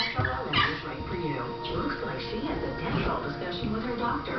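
Television playing in the room: music and voices from a commercial break.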